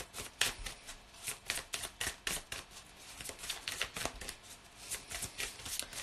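A deck of cards being shuffled overhand by hand: a quick, uneven run of soft clicks as the cards slap together.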